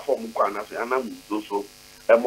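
Speech: a man talking over a telephone line, his voice cut off above about 4 kHz.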